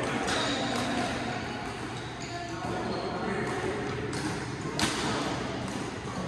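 Badminton rally in a large hall: several sharp racket strikes on the shuttlecock, with the loudest about five seconds in, over indistinct background voices.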